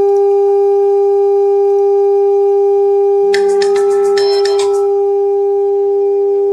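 Steady 400 Hz sine test tone from a tone generator, played through a loudspeaker, holding one pitch throughout. A little past three seconds in, a brief flurry of clicks and short higher beeps sounds over it for about a second and a half.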